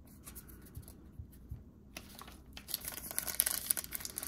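A trading-card pack's wrapper is torn open and crinkled by hand, a dense crackling that starts about two and a half seconds in. Before it there are only a few faint taps from cards being handled.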